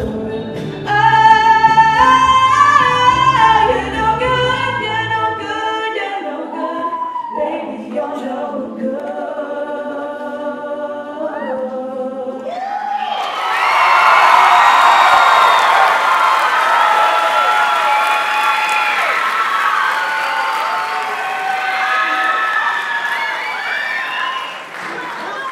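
Female solo vocalist singing into a handheld microphone over low accompaniment that drops out about five seconds in, leaving the voice alone to finish the song. About halfway through, the audience breaks into loud applause and cheering that carries on to the end.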